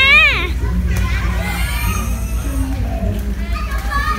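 Children playing and calling out around a swimming pool: a child's high-pitched shout trails off about half a second in, followed by scattered distant children's voices over a steady low rumble.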